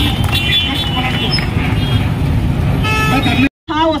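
Busy street noise: a steady low rumble of traffic with scattered crowd voices, and a vehicle horn sounding for about half a second near the end. A moment of dead silence follows it.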